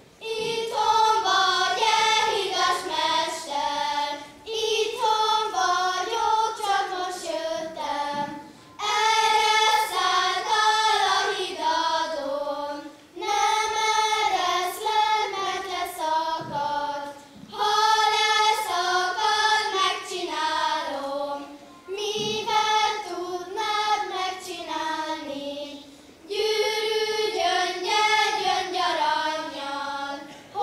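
A group of young girls singing a song together in unison, in phrases of about four seconds with short breaks for breath between them.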